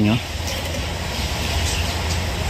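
Steady low background rumble, like distant traffic or a machine running, with no separate sounds standing out.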